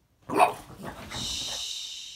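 An excited French bulldog barks once, sharply, about half a second in, then gives about a second of high-pitched hissing noise.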